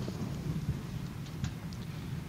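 Low, steady rumble of room and recording noise, with a few faint clicks.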